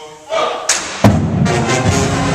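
A marching-style brass band comes in with a loud sudden hit about a second in, then plays on with full brass and drums.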